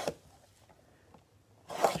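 A box cutter slitting the plastic wrap on a cardboard trading-card blaster box: one short rasping slice right at the start, then only faint handling ticks.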